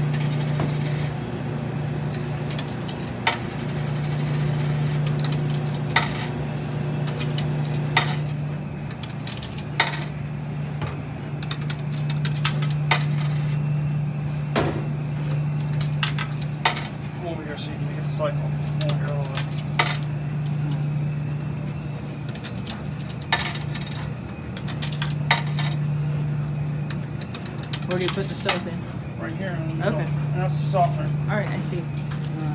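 Coins being fed one at a time into a coin-operated washer's coin box, each a sharp metallic click or clink, about ten over the stretch at intervals of two to three seconds. Underneath runs a steady low machine hum.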